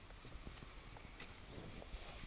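Faint scattered clicks and low knocks of handling noise as a handheld camera is moved through a car's cabin, with a few slightly louder knocks near the end.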